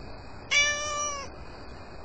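A cat meowing once, a single call under a second long that falls slightly in pitch at the end.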